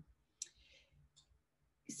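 Near silence in a pause between words, with a faint click about half a second in, a soft high hiss after it, and a smaller click just after a second.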